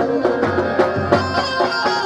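Gujarati folk band music for dandiya raas: regular drum strikes under a held melody line on keyboard and stringed instrument.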